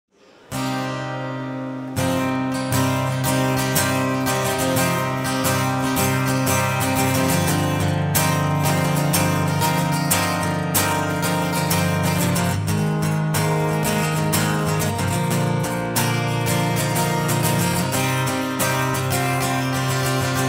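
Solo acoustic guitar playing an instrumental introduction: a single chord rings briefly, then steady strumming begins about two seconds in and carries on evenly.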